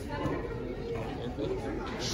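Indistinct chatter of many people talking at once in a large room.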